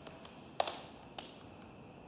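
Three light taps, the middle one the loudest with a short ringing tail, over a faint steady hiss.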